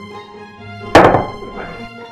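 Instrumental background music. About a second in there is a single loud thunk of a plate set down on the table, with a smaller knock about half a second later.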